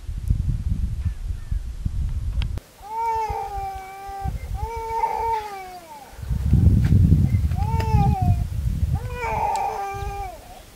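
A cat meowing repeatedly: four drawn-out meows, each about a second long, rising and then falling in pitch. A low rumble, like wind on the microphone, fills the first couple of seconds and returns briefly in the middle.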